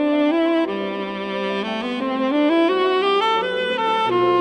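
Tenor saxophone playing a phrase of held notes that climbs step by step through the second half, accompanied by grand piano.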